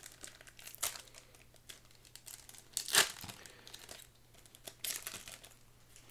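Foil wrapper of a Japanese Pokémon booster pack crinkling and tearing as it is opened, in short bursts, loudest about three seconds in.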